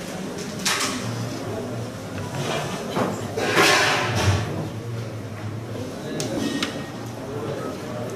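A carrom shot: the striker is flicked across the powdered board with a brief sliding hiss and knocks into the carrom men, followed by a couple of light clicks of pieces.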